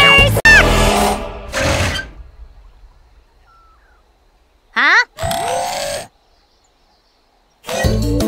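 Animated cartoon soundtrack: a loud pitched music cue fades away over the first two seconds. It is followed by a short, steeply falling sound effect and a brief held tone about five seconds in, then upbeat Latin-style music with drums and shakers starts near the end.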